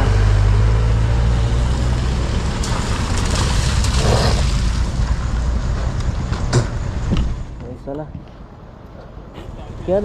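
A vehicle engine idling with a steady low rumble, which drops away about seven seconds in, leaving quieter road noise and a few voices.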